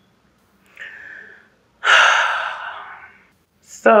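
A person's breath: a quieter intake about a second in, then a long, loud sigh out lasting over a second.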